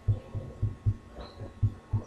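A steady run of short, low, dull thumps, about four a second.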